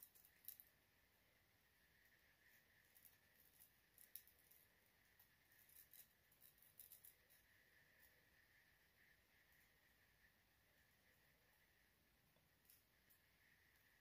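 Faint, scattered snips of small scissors cutting the HD lace of a lace-front wig along the hairline, in near silence. The snips come singly and in small clusters and stop after about seven seconds.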